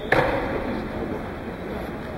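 A single sharp knock right at the start, echoing briefly in a large indoor pool hall, followed by the hall's steady background noise.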